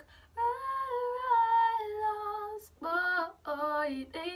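A woman singing unaccompanied: one long held note for about two seconds, then two short phrases.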